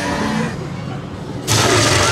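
Haunted-maze sound effects: a low steady rumble that jumps suddenly louder, with a hiss, about one and a half seconds in.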